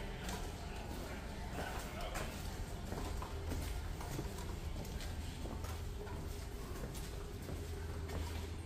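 Footsteps on a hard floor, irregular clicks over a steady low hum.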